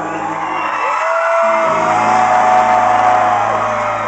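Live country band playing the close of a song, the bass dropping out briefly before a long held note swells through the middle and falls away, with whoops from the crowd.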